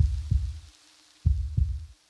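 Heartbeat sound effect: two low double beats (lub-dub), about a second and a quarter apart.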